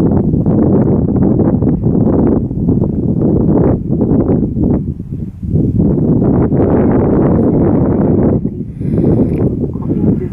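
Wind buffeting the camera microphone: a loud, gusty low rumble that eases off briefly a few times.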